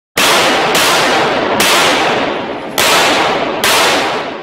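Five gunshots laid over the end card, each a sharp crack followed by a long echoing tail, spaced unevenly about a second apart. They match bullet holes appearing in the targets' head boxes.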